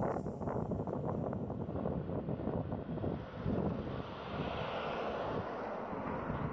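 A van driving past on an asphalt road, its engine and tyre noise swelling as it goes by, with gusty wind on the microphone.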